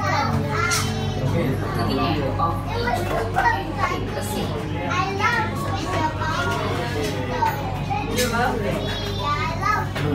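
Many children's voices chattering and calling out at once, a crowded hubbub with no single clear speaker, over a steady low hum.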